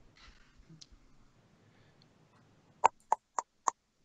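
Four quick knocks on a door, evenly spaced and about a third of a second apart, coming near the end.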